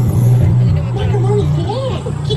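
A steady low hum inside a dark theme-park ride, with voices speaking over it from about a second in.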